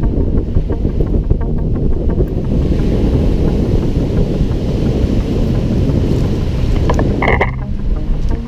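Wind rumbling on an action camera's microphone outdoors, a dense low noise, with a brief high chirp about seven seconds in.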